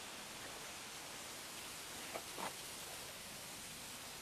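Steady, even rushing of a waterfall heard from a distance, with a faint short sound about halfway through.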